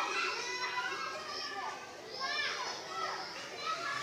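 Children's voices in the background, faint calls and shouts of children at play, with rising and falling pitch.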